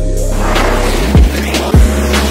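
Hip-hop-style background music: a deep bass note with two heavy kick-drum hits in the second half, over a hissing swell that builds from about half a second in.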